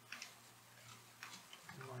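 Faint computer keyboard typing: a handful of separate sharp key clicks, more of them in the second half, over a steady low hum.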